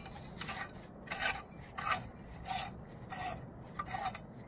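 Clear tubular high-pressure sodium lamp being twisted by hand in its screw socket, the metal base grinding against the socket threads in about six short rasps, one every two-thirds of a second or so.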